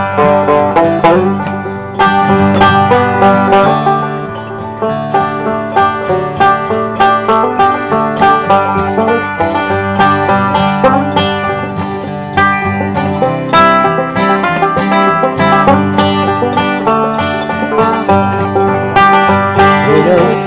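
Banjo and acoustic guitar playing an instrumental break between verses of a slow country-blues ballad, with no singing. The banjo picks a quick stream of notes over the guitar.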